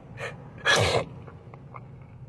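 A man crying: a short breath near the start, then a louder breathy sob lasting about a third of a second, ending in a brief falling groan.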